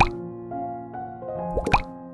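Gentle background music with held notes, and two quick rising 'plop' pop sound effects from a subscribe-button animation: one at the very start and one about a second and a half later.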